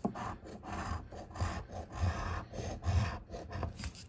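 A metal coin scraping the coating off a paper scratch-off lottery ticket in quick repeated strokes.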